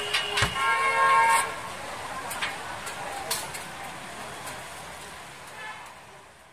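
Busy street-market background noise, with a short steady horn-like tone lasting about a second near the start and a few scattered clicks. The sound fades out near the end.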